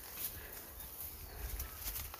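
Footsteps pushing through forest undergrowth, with a few faint crackles and rustles of stems and leaves, over a steady low rumble of wind or handling on the phone's microphone.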